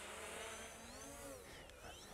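Faint buzzing whine of a Xiaomi X8 SE quadcopter drone's propellers in flight, its pitch sliding up and down as the motors change speed.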